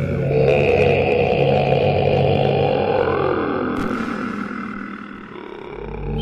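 A deep, rough growl-like sound, like a monster's roar or a heavily distorted voice. It rises in pitch about three seconds in, then fades near the end.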